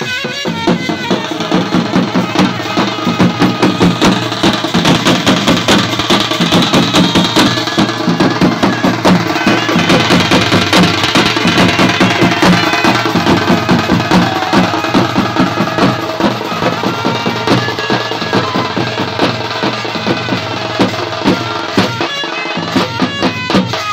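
Bhawaiya folk wedding band's drums playing a fast, steady beat: a stick-and-hand barrel dhol, snare-type drums and a tin drum, with a hand-held metal cymbal. The drumming comes in about a second in as a reed-like melody stops.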